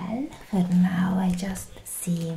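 A woman's soft wordless vocalizing: a short gliding sound at the start, then a held hum from about half a second in, lasting about a second.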